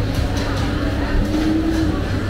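Busy market background noise: a steady low rumble with a faint held tone that rises slightly near the end.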